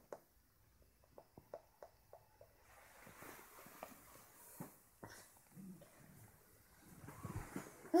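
A baby stirring awake in bed: a run of small clicks, then a soft rustle of bedding as it rolls over, and faint baby vocal sounds building near the end.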